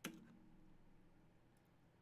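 A single sharp computer mouse click right at the start, then near silence with a faint low tone trailing off.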